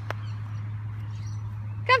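Outdoor background of a steady low hum with faint bird calls, then a woman shouts to call a dog right at the end.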